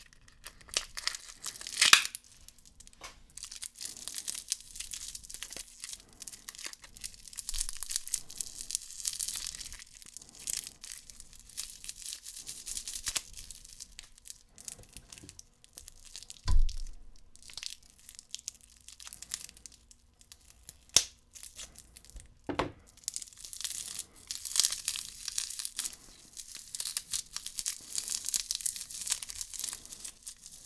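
Close-miked crinkling and crackling of candy packaging being handled, with scattered sharp clicks, one dull thump about sixteen seconds in and another sharp click a few seconds later.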